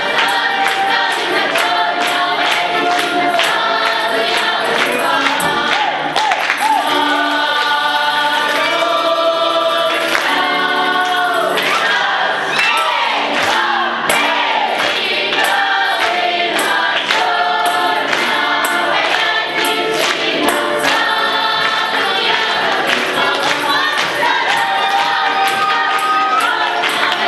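Folk choir of women's and men's voices singing a lively song in chorus, accompanied by accordion, with tambourine and hand strikes keeping a quick, steady beat.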